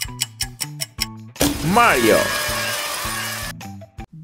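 Quiz countdown music with a quick ticking beat over short bass notes. About a second and a half in it gives way to a loud swooshing transition sound effect with a gliding, falling-then-rising tone, which fades just before the next clip starts.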